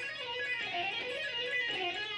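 Electric guitar playing a fast legato run of hammer-ons and pull-offs, sliding back up the neck from one position to the next, the notes running together smoothly with almost no picking.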